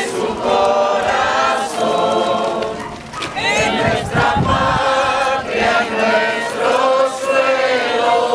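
A crowd of many voices singing a hymn together, in long sung phrases with a short dip in loudness about three seconds in.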